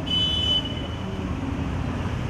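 A short, high-pitched vehicle horn beep at the start, loud for about half a second and then fading, over a steady rumble of street traffic.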